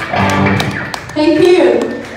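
Voices whooping and calling out, with scattered claps and sharp taps, as a live rock song ends. The loudest call falls in pitch just past the middle.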